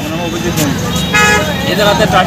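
A vehicle horn toots once, briefly, about a second in, over a low steady hum.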